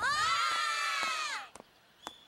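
A team of young baseball players shouting "Right!" together in one held shout of many voices, lasting about a second and a half.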